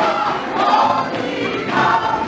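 Gospel vocal group singing live into microphones, heard through the venue's sound system.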